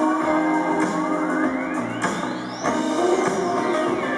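Live rock band playing an instrumental passage with electric guitars and drums. A sweeping tone climbs steadily for about two and a half seconds, then falls back near the end.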